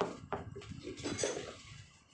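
Knocks and clatter from heavy retreaded truck tires being handled on a pickup's metal bed and rack. A sharp knock at the very start and another about a third of a second in are followed by lighter, irregular rattling that fades toward the end.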